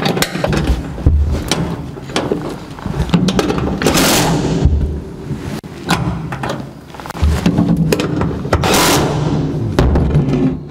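Cordless drill-driver running in short bursts to drive the bolts of the gas pedal bracket, with knocks and thumps of metal parts between the bursts. The two loudest bursts come about four seconds in and near the end.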